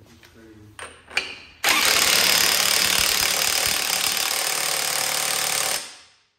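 Cordless impact wrench hammering for about four seconds, driving home the gland nut that holds a new flywheel on an air-cooled VW Beetle engine's crankshaft. It starts suddenly after a couple of short clicks and stops abruptly.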